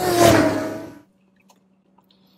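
A bite into a Taco Bell Cheddar Habanero Quesarito, a burrito in a grilled tortilla: one loud, noisy bite sound that peaks just after the start and fades away within about a second.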